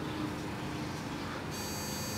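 A high-pitched electronic tone made of several steady pitches at once starts about three-quarters of the way in, over a low steady background hiss.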